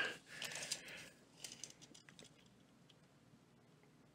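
Faint clicks and rustles of a steel tape measure being handled and laid along a folding fillet knife, mostly in the first two seconds, then near silence.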